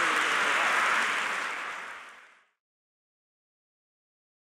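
Audience applause in an auditorium, steady at first, then fading out over about a second until it is gone about two and a half seconds in.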